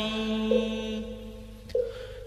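Chanted recitation of Vietnamese verse: a voice holds a long steady note at the end of a line, fading out over about a second and a half, with a short note sounding near the end.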